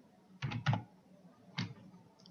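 Computer keyboard keystrokes: a quick run of three or so clicks about half a second in, then one more a second later.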